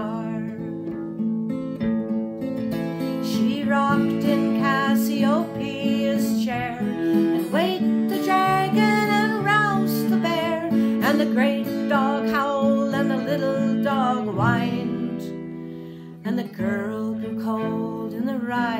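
Acoustic guitar strumming under a bowed fiddle melody played with vibrato, an instrumental passage of a folk song. The music dips briefly near the end.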